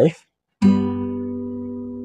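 Acoustic guitar strummed once about half a second in: a G major barre chord, the five chord in the key of C, left ringing steadily.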